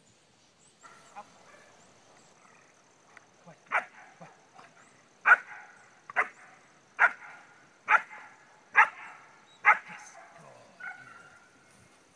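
A dog barking at its handler during foundation bite work. There are a few softer yips at first, then seven loud, sharp barks about a second apart, the last one near the end.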